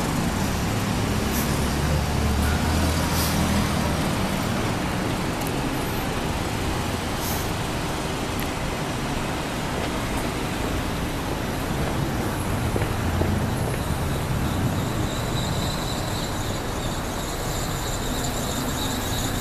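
City street traffic: a steady wash of passing cars' engines and tyres, with a low engine rumble swelling in the first few seconds and again about two-thirds of the way through. A faint high whine comes in near the end.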